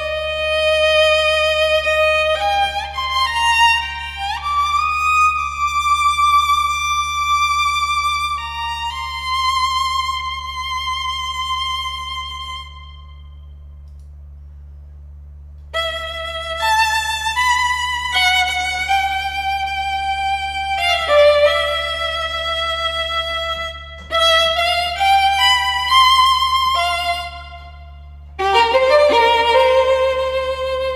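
Virharmonic Bohemian Violin, a sampled solo violin played live from a keyboard: slow expressive phrases with vibrato and sliding rises into notes. After a pause of about three seconds in the middle it plays more phrases, with quicker shorter notes near the end. A steady low hum runs underneath.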